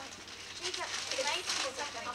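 Quieter voices talking in the background while wrapping paper rustles and tears as a present is unwrapped.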